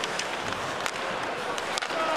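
Ice hockey arena ambience: a steady hum of crowd noise, with a few sharp clacks of sticks and puck on the ice.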